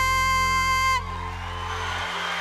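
A female singer holds one long, steady, very high belted note over a sustained band chord; the note cuts off about a second in. A wash of audience cheering follows under the fading chord.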